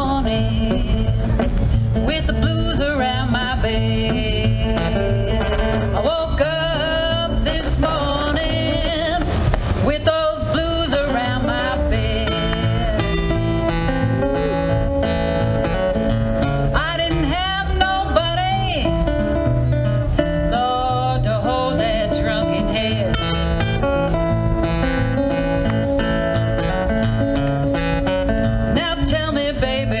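Acoustic guitar picked and strummed under a woman's wordless singing voice, her pitch bending and sliding in a blues yodel.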